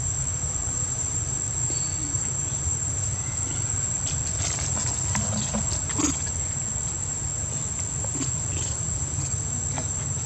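Steady high-pitched drone of insects, unbroken throughout, over a low even rumble, with a few faint clicks and rustles around the middle.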